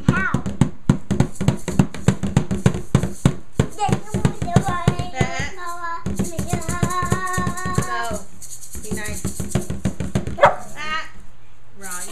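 A drum beaten in a quick, steady rhythm, about five strokes a second, with a small child singing long wordless notes over it in the middle and one louder stroke near the end.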